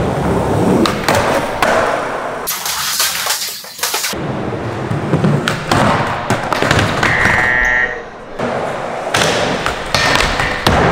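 Skateboards rolling on the wooden surfaces of an indoor skatepark, with the sharp clacks of tail pops, landings and grinds on a ledge and a rail in a large hall. A brief high squeal comes about seven seconds in.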